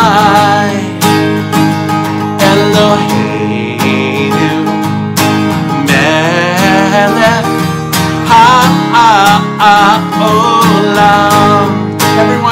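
A man singing a simple children's song while strumming an acoustic guitar in a steady rhythm.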